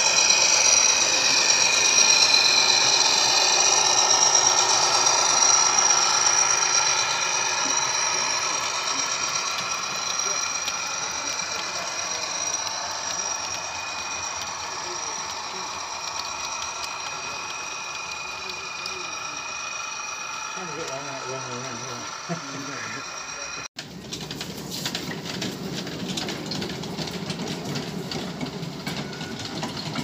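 Model railway locomotive motors whining steadily with wheels running on the track, fading slowly as the train runs away round the layout. After a sudden cut about three-quarters of the way in, a miniature passenger railway rumbles with rapid clicking from its wheels on the rail joints.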